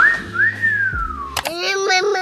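A person's wolf whistle: a short rising note, then a long note sliding back down. Voices take over about one and a half seconds in.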